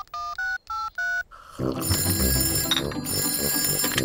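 Mobile phone keypad beeping as a number is dialled: five quick beeps, each two tones together. About a second and a half in, a telephone bell starts ringing and keeps on.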